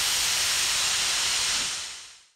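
Steam locomotive letting off steam: a steady hiss that fades away near the end.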